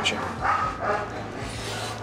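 A frightened poodle-mix dog giving short, pitched whining cries as it is approached and handled.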